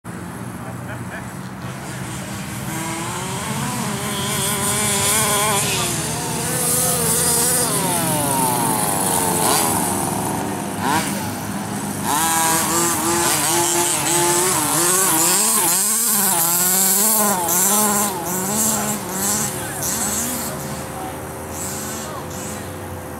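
Two-stroke petrol engines of 1/5-scale HPI Baja RC trucks revving up and down as they drive across the grass. The pitch keeps rising and falling, with long sweeping glides as they pass.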